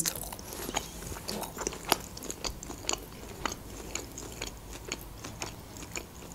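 Close-miked chewing of soft lokma dough balls: small wet mouth clicks and smacks, irregular, several a second.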